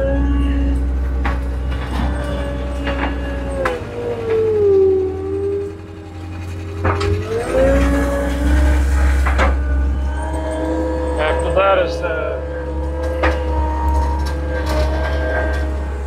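Cat skid steer's diesel engine running, its speed dropping about four seconds in and revving back up a few seconds later, with scattered knocks and clanks.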